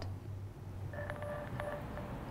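Quiet background room tone with a low steady hum. A faint steady tone sounds for under a second about a second in.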